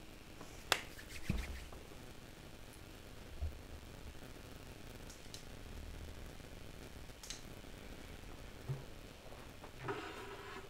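Scattered handling noises as equipment and furniture are moved about: a sharp click under a second in, a few clicks with a dull knock just after, and softer knocks and clicks later.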